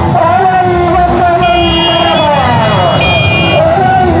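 A voice chanting in long, sliding tones over a street crowd, with a high horn tooting twice in the middle.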